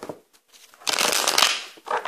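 A tarot deck being shuffled by hand: bursts of card riffling and rustling, loudest from just under a second in, after a brief pause.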